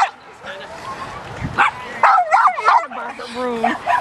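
A dog yipping and whining excitedly close by: short high yips in the middle, then one long whine near the end.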